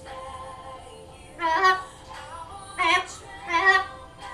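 Blue-fronted amazon parrot singing in three short, loud phrases: about a second and a half in, near three seconds, and just before the end. Faint music plays in the house behind it.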